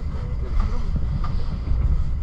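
Passenger train coach running at speed, heard from inside the car: a steady low rumble of wheels and running gear.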